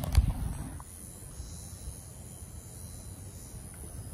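Outdoor ambience picked up by a handheld phone: a knock from handling just at the start, then a steady low rumble of wind on the microphone under a faint, steady high-pitched buzz.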